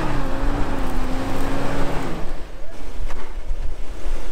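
Off-road truck engine running under load as it climbs a sand slope, its note easing down slightly and then cutting off about halfway through. Wind rumble on the microphone follows.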